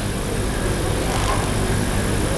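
Steady background hiss with a low hum from a live microphone feed, with no clear event in it.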